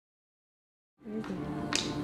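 Silence for about a second, then background music starts, with a single sharp click near the end.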